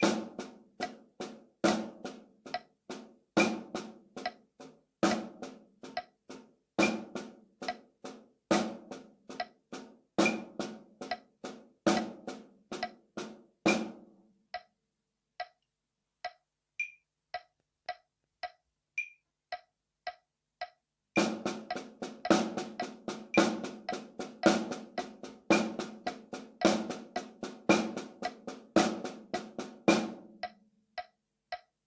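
Snare drum played with drumsticks in paradiddle sticking (right-left-right-right, left-right-left-left), the first note of each group accented, over a metronome click at 70 beats per minute. About 14 seconds in the drumming stops and the click alone runs at a faster 110 beats per minute. About 21 seconds in the paradiddles start again at that faster tempo.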